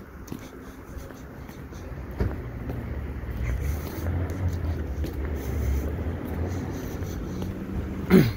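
A passing car's engine, a low rumble that builds about two seconds in and eases near the end.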